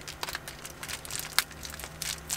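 Small clear plastic parts bag crinkling and crackling as it is handled and worked open, in irregular small crackles with one sharper crackle about one and a half seconds in.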